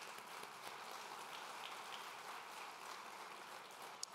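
Audience applauding: a steady patter of many hands clapping, easing off near the end.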